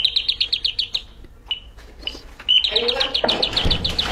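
Electronic doorbell playing a bird-chirp tune: a run of rapid high chirps, about ten a second, then a single short chirp, then a second rapid run.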